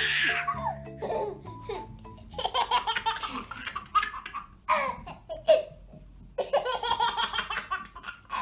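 A baby laughing in three bursts of giggles. A short chiming music jingle plays in the first second or so.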